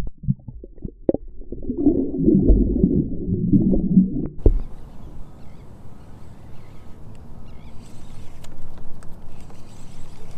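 Muffled sloshing and gurgling of water around a camera held at the waterline as a bass is released. About four and a half seconds in it cuts off suddenly to a quieter steady hiss with a few faint clicks.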